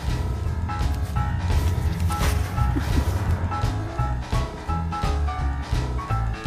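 Background music with a steady beat, a heavy bass line and repeating melody notes.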